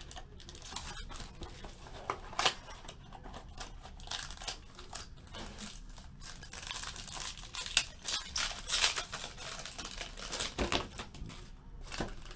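A trading-card box being torn open by hand, then its foil pack wrapper crinkling and ripping. The sound is a long run of irregular crackles and tears.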